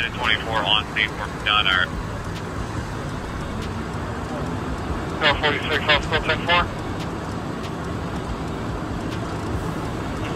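Steady outdoor roar like traffic noise, with brief, indistinct voices calling out near the start and again about five to six and a half seconds in.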